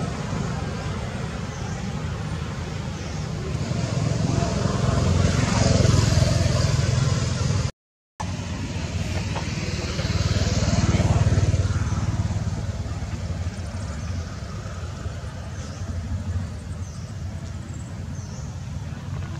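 Road traffic: a steady low rumble with passing motor vehicles swelling louder and fading away twice, about four seconds in and again about ten seconds in. A short break in the sound comes just before eight seconds.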